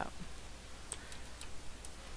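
A few faint, sharp clicks, irregularly spaced, over a low steady electrical hum.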